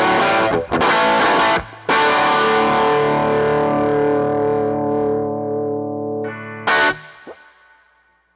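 Electric guitar played through a Doxasound dual overdrive pedal (Amp 11 / Honey Bee OD), strumming overdriven chords. A few short chopped chords come first, then one long chord is left to ring and slowly fade. A short final stab comes about seven seconds in, and the sound dies away.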